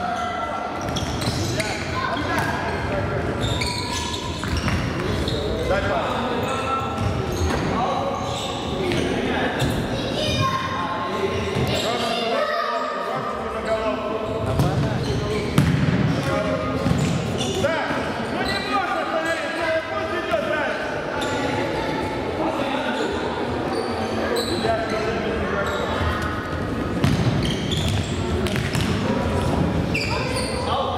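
Futsal ball being kicked and bouncing on a wooden gym floor, with overlapping indistinct voices of players and onlookers, all echoing in a large hall. One knock about halfway through is louder than the rest.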